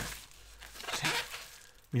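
Soft crinkling and rustling of plastic bubble wrap and a plastic bag as a large wrapped cube is lifted and handled, loudest at first and fading away.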